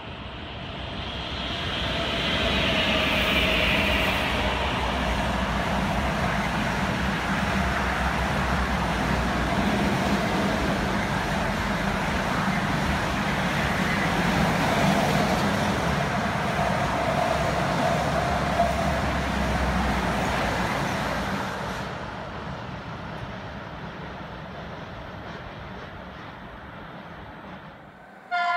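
A long rolling-highway freight train, lorries carried on low-floor wagons behind red electric locomotives, passing through a station. Its steady rumble and rail noise build over the first two seconds, hold, and fade away after about 21 seconds.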